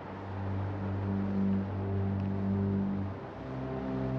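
Low, held notes of background film-score music. About three seconds in they give way to a new, slightly higher chord.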